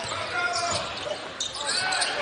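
Basketball being dribbled on a hardwood court during live play, with the echo of a large arena.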